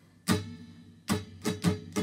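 Steel-string acoustic guitar strummed on a held chord in a down-and-up strumming pattern: one strum, a short gap, then a quicker run of strokes, the chord ringing between them.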